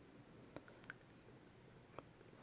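Near silence with a few faint light clicks: a quick cluster from about half a second to one second in, and one more at the end. They come from a paper card being pressed flat and set down on a work table.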